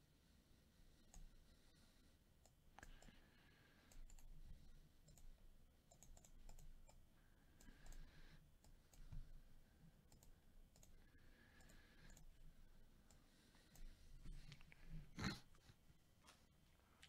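Near silence with faint, scattered small clicks and taps, and one sharper click near the end.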